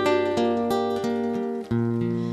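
Acoustic guitar playing an instrumental passage alone: single notes plucked one after another, about three a second, over held bass notes. There is a brief dip in level near the end before a new low bass note sounds.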